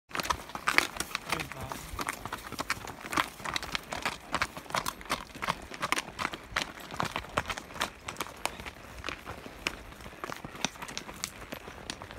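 Horses walking on a gravel and dirt track: an irregular run of hoof clops, several a second, the nearest horse's hooves loudest.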